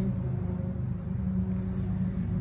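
Steady low machine hum, as of a motor running at constant speed, with no change in pitch or level.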